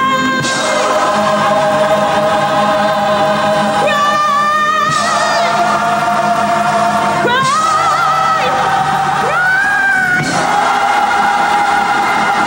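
Live gospel singing: a female lead vocalist holds long notes with vibrato, several of them sliding upward, over a choir and a steady low accompaniment.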